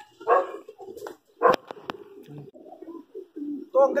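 Domestic pigeons cooing, low repeated coos, with two sharp clicks about a second and a half in.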